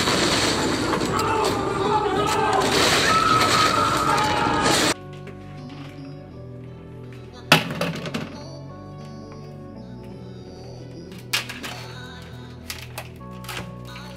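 For the first five seconds, a loud burst of crashing and breaking mixed with shouting voices, which cuts off suddenly. Then background music with a steady beat, with a few sharp clicks from a plastic tray of raw chicken being handled at a kitchen sink.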